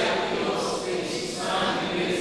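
A choir of several voices singing together in a sustained, chant-like line.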